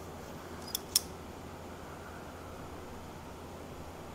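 Two sharp clicks, about a fifth of a second apart and about a second in, from small pliers snapping shut while crimping a toy car's thin metal axle onto its pin. A steady low hum sits underneath.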